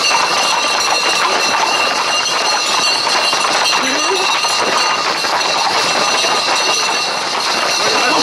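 Hooves of a group of Camargue horses on a paved road and the feet of people running beside them, mixed with the indistinct voices of a crowd. A steady high-pitched buzz runs underneath throughout.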